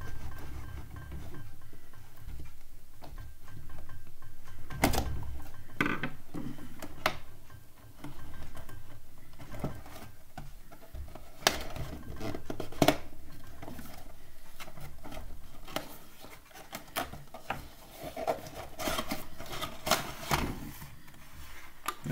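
Cardboard and plastic packaging being handled as a diecast model car is worked out of its box: scattered clicks, taps and rustles over a low handling rumble. The clicks come singly at first and bunch into a quick run near the end.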